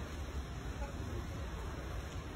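Wind buffeting the microphone outdoors: a steady low rumble under an even hiss.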